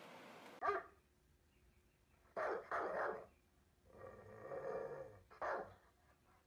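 A dog barking: separate short barks about a second in, twice around the middle and once near the end, with a longer drawn-out pitched call between them.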